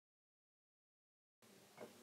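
Near silence: dead silence, then faint room tone comes in near the end.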